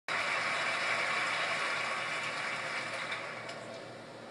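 Audience applause, starting abruptly and slowly dying down.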